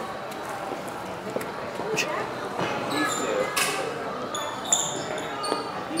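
Low murmur of voices in a large hall, with a few scattered clicks and knocks.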